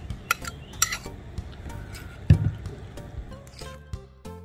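Metal spoon clinking and scraping against a ceramic bowl as marinade is scraped out, with a few sharp clinks in the first second and a dull thump a little past two seconds in.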